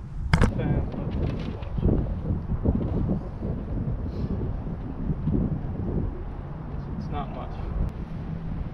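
Wind buffeting an outdoor camera microphone, a steady low rumble, with one sharp click about half a second in.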